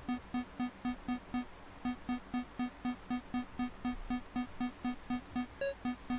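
A short pitched sample played by the WerkBench sampler app on an iPad, triggered by MIDI notes from a step-sequencer app and repeating about four times a second. Near the end, a higher note sounds once: the step that was moved from C2 to E.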